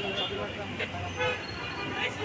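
Busy street traffic: vehicle engines running close by, with a low steady hum, under people talking.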